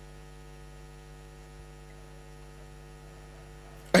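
Steady electrical mains hum, a stack of even tones under faint hiss, during a pause in speech.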